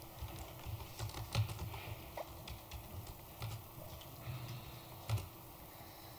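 Faint, irregular clicking of laptop keys being typed on, with soft low thumps mixed in.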